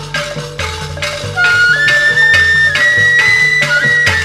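Traditional ensemble music for a stage drama: percussion strokes about three a second over low bass notes, joined about one and a half seconds in by a louder, high flute-like melody held in long notes.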